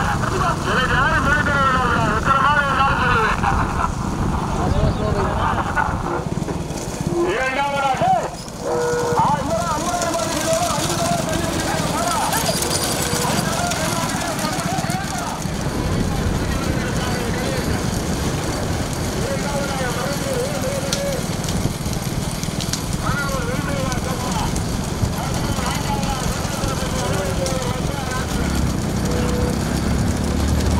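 Men's voices shouting and calling in bursts over a continuous low rumble of wind and road noise as racing bullock carts run along the road.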